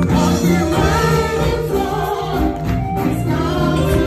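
Church choir singing a gospel praise song, backed by a live band with a drum kit, loud and continuous.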